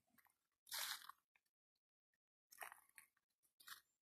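Footsteps crunching on dry leaf litter and twigs: three short, quiet crunches, about a second in, about two and a half seconds in, and near the end.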